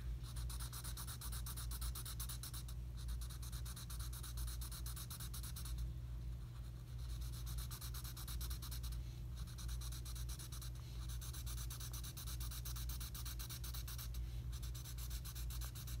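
Black felt-tip marker scratching back and forth on paper in rapid, even shading strokes, with a few brief pauses where the pen lifts.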